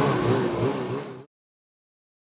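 Snowmobile engine running, its pitch wavering gently up and down, then cutting off suddenly about a second in.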